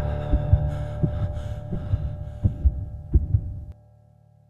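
Heartbeat-like double thumps over a low, steady drone with a few held tones, a horror-style sound effect. The drone cuts off suddenly near the end, leaving a faint hum.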